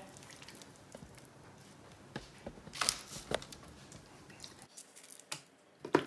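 Faint wet squishes and a few short, sharp clicks as marinated chicken pieces are lifted by hand from a steel bowl and set down on a wire baking rack.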